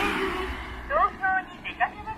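A car passing close by on the road, its noise loudest right at the start and fading over the first second. Short rising chirps follow, in a few quick groups, about a second in and near the end.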